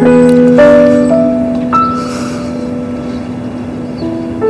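Slow, soft piano background music: a few notes struck in the first second or so, then held and fading away.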